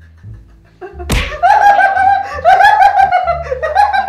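A sudden sharp burst as someone breaks into laughter, followed by loud, high-pitched laughing in rapid pulses.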